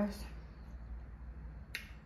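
Low steady room hum, then a single sharp click near the end.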